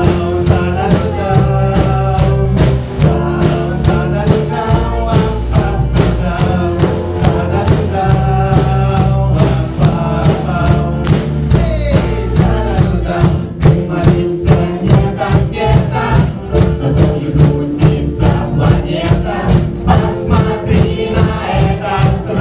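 Live church band playing an instrumental passage: a steady drum beat under bass guitar and keyboard chords, with a flute carrying the melody.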